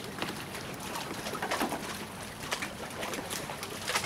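Fillet knife working a fish fillet on a wet wooden cutting board: irregular light knocks and scrapes of the blade on the board, about one or two a second, over a steady hiss, with the knife laid down on the board near the end.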